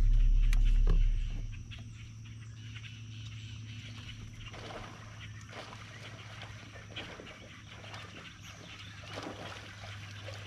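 A bass boat's electric trolling motor gives a steady low hum that cuts off about a second in. After it, a quieter lakeside background is left, with scattered faint chirps and clicks.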